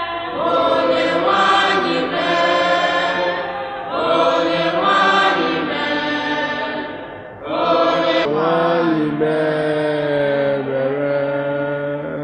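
Church congregation singing together in long sung phrases, with short pauses for breath about four seconds and seven and a half seconds in.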